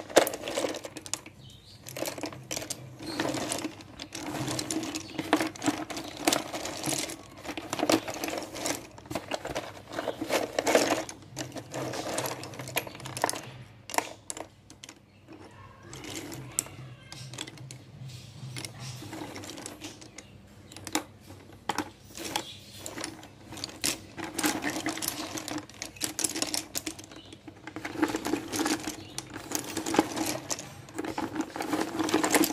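Slate pencils clicking and clattering against one another as a hand stirs through a cardboard box full of them, in dense irregular rattles with a quieter lull partway through.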